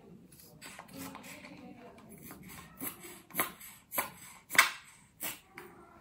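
Handling noises while face cream is applied: a faint rustle, then five short sharp taps about half a second apart in the second half, the fourth the loudest.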